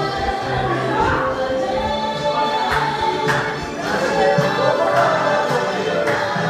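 A crowd of demonstrators singing together in unison, many voices at once.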